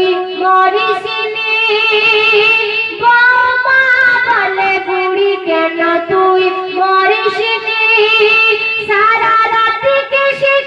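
A woman singing a Bengali Islamic gojol into a microphone, with long held notes that slide and waver between pitches.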